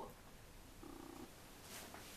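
Near silence: room tone, with a brief faint hum about a second in.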